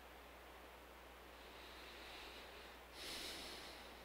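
A man breathing close to the microphone: a soft breath in, then a short, louder breath out about three seconds in, over a faint steady hum.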